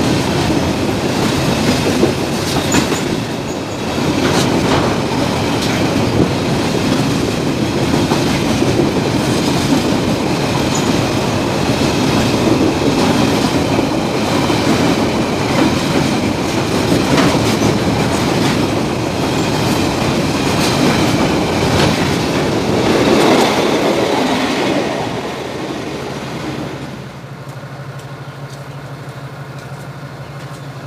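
Container freight wagons rolling past close by, wheels clicking irregularly over rail joints under a steady rumble. Near the end the last wagons clear, and the noise drops to the steady low hum of a diesel locomotive idling.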